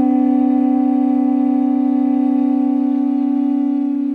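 A pū (Hawaiian conch shell trumpet) blown in one long, steady note that begins to fade near the end.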